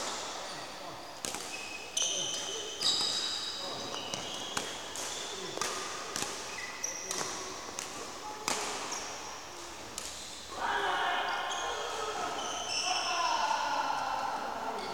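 Badminton racket strikes on a shuttlecock, sharp clicks every second or so, with short high squeaks of shoes on the court floor, echoing in a sports hall.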